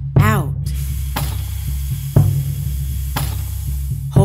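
Meditation music over a steady low drone, with a soft tick marking each second of the breathing count. A short falling-pitch tone sounds right at the start, and an airy hiss runs from about half a second in.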